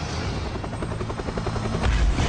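Helicopter rotor chopping: a fast, even beat of short pulses over a low rumble.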